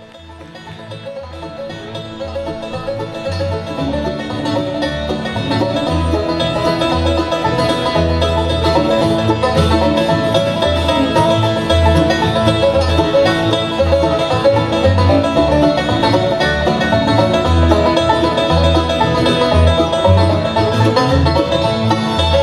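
Bluegrass band playing an instrumental intro on banjo, fiddle, acoustic guitar, mandolin and upright bass, with a steady low bass pulse; it fades in over the first several seconds.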